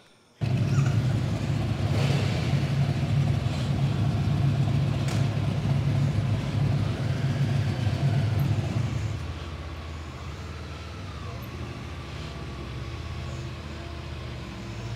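Honda CB500F's parallel-twin engine starting about half a second in and idling steadily, heard close up from a bike-mounted camera, with the idle dropping to a lower, quieter note about nine seconds in.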